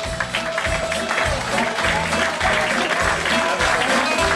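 Live band playing the closing bars of a song over a steady bass beat, with the audience clapping and applauding, the applause growing after a second or two.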